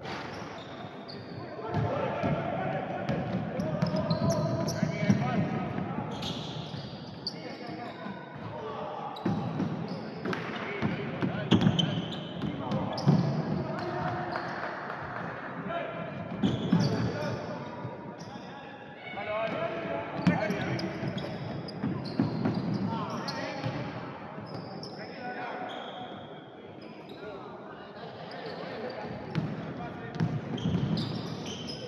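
Basketball game sounds in a gym: a ball dribbled on the hardwood court, with players and spectators shouting and talking.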